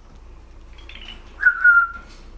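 A single short, clear whistle starting about one and a half seconds in, one note that dips slightly in pitch, with a brief fainter chirp about a second before it.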